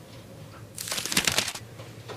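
A brief crackling rustle of quick small clicks, lasting under a second, about a second in, over faint room tone.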